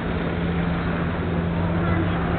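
Busy street ambience: a steady low hum with the voices of passing pedestrians over it.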